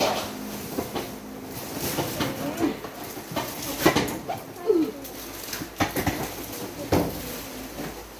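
Luggage being lifted and stacked on locker shelves: a series of sharp knocks and thumps, about six over several seconds, as a hard-shell suitcase and other bags are shifted into place.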